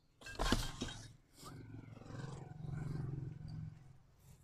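Plastic grocery bags rustling and knocking as they are set into a car's cab, loudest in the first second, followed by a low, steady droning hum for about two seconds.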